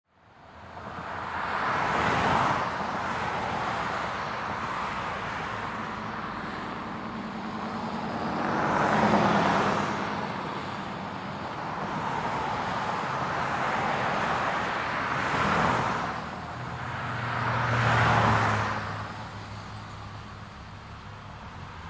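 City street traffic: about four cars pass one after another, each swelling and fading, with a low engine hum under the last pass.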